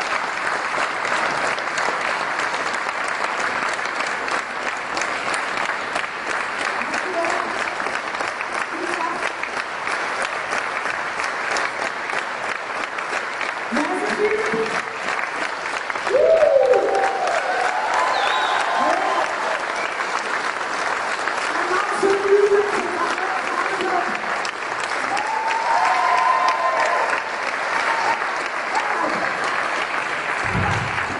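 A large audience applauding steadily. From about halfway through, several voices call out over the clapping.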